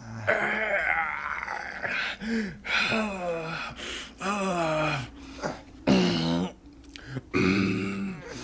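Two men grunting and groaning with strain as one is held in a chokehold on the floor: a string of drawn-out groans about a second apart, several sliding down in pitch.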